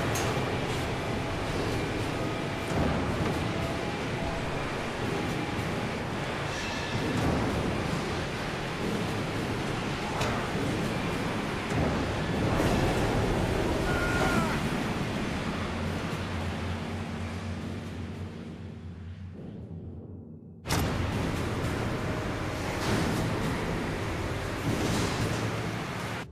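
Soundtrack of an industrial safety film playing back: music over a dense, noisy bed of sound. It fades toward twenty seconds in, drops out for a moment, then returns.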